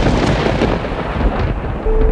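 Thunder-like rumbling noise effect swelling up for about two seconds, with steady held music notes coming in near the end.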